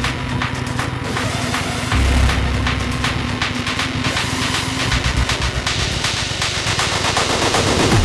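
Hardcore industrial techno at about 160 BPM: a dense, rapid run of hard distorted percussion hits, with a heavy bass coming in about two seconds in and again about five seconds in.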